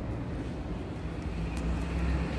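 Steady low outdoor rumble of a city's background noise, with a few faint clicks near the end.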